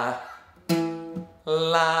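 Acoustic guitar note plucked and left ringing, then plucked again as a man sings a held 'la' on it with vibrato, a pitch-matching singing exercise. A previous sung 'la' fades out at the start.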